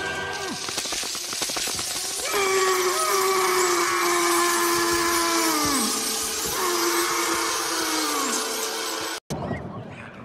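Dense crackling and skittering clicks of a swarm of scarab beetles crawling over a wrapped body. Two long wailing tones rise over it and slide down at their ends. The sound cuts off abruptly near the end.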